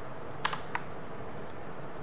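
A few clicks of computer keyboard keys, three close together about half a second in and a faint one later, over a steady low room hiss.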